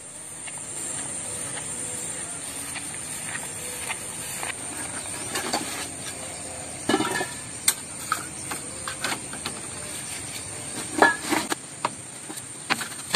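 Steady high-pitched chirring of insects. From about five seconds in, it is joined by rustling and several sharp knocks as gear is pulled from a backpack and set down on a slatted bamboo floor.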